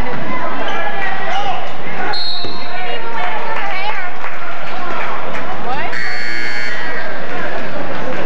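Crowd chatter filling a school gym during a basketball game. A brief high whistle blast sounds about two seconds in, and an electric scoreboard buzzer sounds for about a second near the end.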